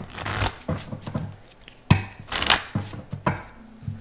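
A deck of oracle cards being shuffled by hand: a few irregular bursts of cards sliding and slapping against each other, the loudest about two seconds in.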